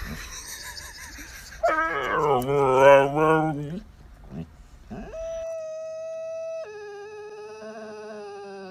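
Husky giving a drawn-out, wavering howl for about two seconds, starting about a second and a half in. From about five seconds in, a steady held tone follows and steps down to a lower pitch about a second and a half later.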